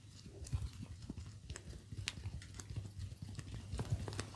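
Fingers slick with mustard oil rubbing and pressing around an ear, making irregular small wet clicks and squelches.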